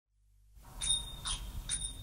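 Start of a Thai song after a brief silence: a small ringing metal percussion instrument struck three times, a little under half a second apart, each stroke leaving a high bell-like ring, over a faint low hum.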